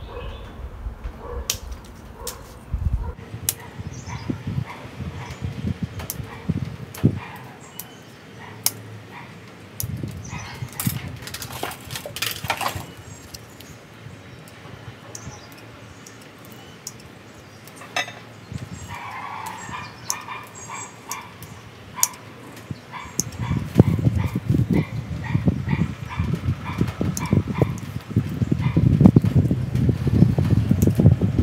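Pruning shears snipping twigs and leaves off a small-leaved ficus bonsai, a string of sharp clicks with some leaf rustle. A short repeated pitched whine comes from about 19 to 23 seconds in, and a low rumbling noise fills the last several seconds.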